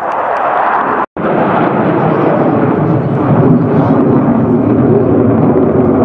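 Jet engines of a three-ship formation of MiG-29 fighters, each with twin RD-33 turbofans, heard as loud, steady jet noise overhead, broken by a split-second dropout about a second in.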